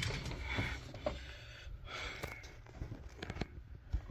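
Faint handling noises: a few small clicks and rustles scattered through, over a low steady room hum, while the diagnostic tablet boots up without a chime.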